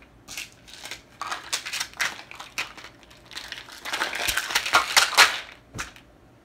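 Plastic pill and vitamin bottles handled and set down on a surface: a run of rattles, clicks and knocks, busiest about four to five seconds in, ending with a single sharp knock.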